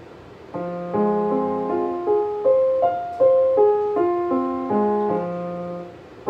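Piano playing a cross-hand F minor arpeggio, played softly: about a dozen single notes, roughly three a second, climb from low F up the keyboard and come back down, each note ringing on under the next.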